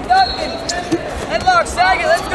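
Wrestling shoes squeaking against the mat in a string of short, sharp chirps as the wrestlers scramble, bunched together in the second half.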